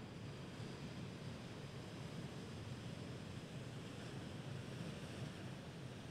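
Ocean surf washing in over the rocks of a tide pool at a king tide: a low, steady rush of breaking and swirling water.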